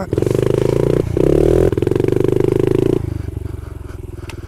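Honda CRF70 pit bike's small four-stroke single-cylinder engine running hard under throttle, with a brief break about a second in. About three seconds in it eases off and drops to a quieter, lower run.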